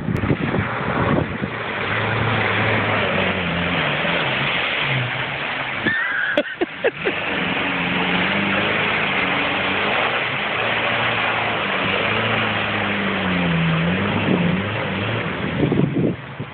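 Daihatsu Feroza 4x4's engine revving up and down under load as it drives through a deep mud pool, over a steady rush of churning, splashing water. About six seconds in the sound dips briefly with a few knocks.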